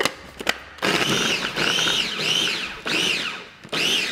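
Electric mini food chopper pulsed about five times, its motor whirring up and dropping back with each press as it chops red onion fine. The first pulse comes about a second in, after a click.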